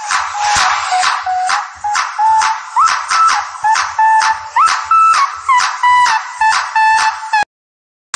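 Background music: a steady beat of about two strikes a second under a high lead melody that slides between notes. It cuts off suddenly for a moment near the end.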